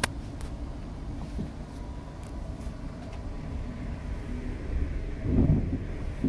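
Cabin noise of a Class 350 Desiro electric multiple unit on the move: a steady low rumble of the running train. There is a sharp click at the very start and a louder rush of rumble about five seconds in.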